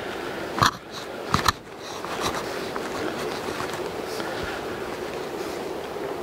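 Footsteps and rustling through dry grass on a path, with a couple of sharp knocks in the first second and a half, then a steady rustling hiss.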